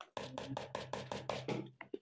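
A metal spoon stirring dry rolled oats and chia seeds in a bowl: quick, irregular clicks and taps of the spoon against the bowl, about seven a second.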